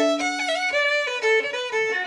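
Solo fiddle playing a double jig at a fast tempo in Irish style: a held low note gives way to quick bowed runs of notes.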